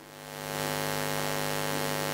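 Steady electrical mains hum with many evenly spaced overtones, swelling in over the first half second and then holding level.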